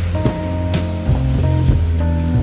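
Background music with a deep bass line and held notes.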